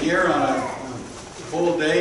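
Congregation's voices together in unison, part of the words held on steady pitches like a chanted psalm or response.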